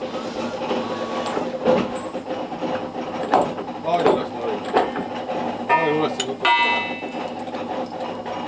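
Wooden support beams being shifted by hand: several sharp knocks in the middle and a short squeal a little before the end, over indistinct voices and a steady hum.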